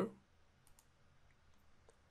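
Faint computer mouse clicks: a close pair about two-thirds of a second in and a single click near the end, from a right-click on the software's connections panel.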